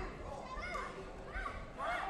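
Children's voices shouting: several short high-pitched calls, each rising and falling in pitch, over the background hubbub of the hall.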